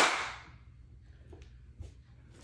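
A single sharp clack of pool balls striking, ringing out over about half a second, followed by two faint clicks later on.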